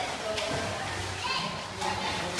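Children shouting and playing in an indoor swimming pool, with water splashing.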